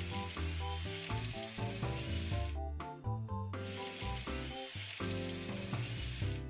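Cartoon dental drill sound effect drilling into a gum: a high, wavering whine in two runs of about two and a half seconds each, with a short break about three seconds in, over cheerful children's background music.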